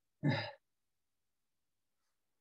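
A single short vocal sound from a person on a video call, about a third of a second long, shortly after the start.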